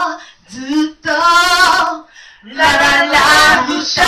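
A woman singing a cappella into a microphone in short phrases. About a second in she holds a note with vibrato, and she sings a louder phrase near the end.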